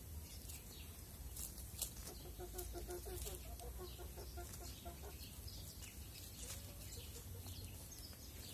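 Domestic hen clucking: a run of short, low notes at about four a second, from about two seconds in to about five seconds in. Around it, sharp little clicks of beaks pecking and scratching among dry leaves.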